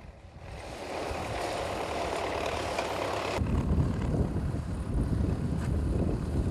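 A van and a tractor driving on a gravel road: a steady road noise that grows louder over the first second. About three and a half seconds in it cuts suddenly to a low rumble of wind on the microphone.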